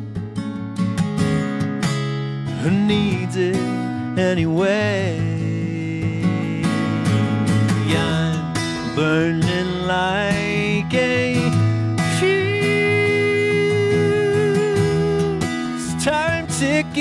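Acoustic guitar played live with a man singing over it in long, wavering held notes, the longest held from about twelve seconds in until near the end.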